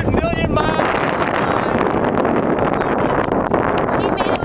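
A high voice calls out briefly at the start, then a loud, steady rush of wind noise on the microphone.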